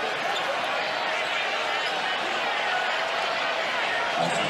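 Arena crowd noise during a stoppage in an NBA game: a steady hubbub of many voices at once.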